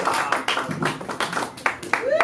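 Scattered clapping from a small audience, irregular claps thinning out as the applause dies down, with a few sharper claps near the end.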